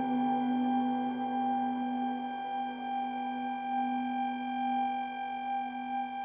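Electric guitar drone sustained through effects pedals: a chord of held, bell-like tones rings steadily, the lowest note loudest, with no new notes struck.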